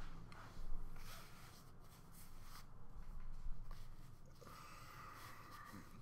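Faint rustling and scratching as a baseball cap is handled, turned around and put back on close to the microphone, over a low steady room hum.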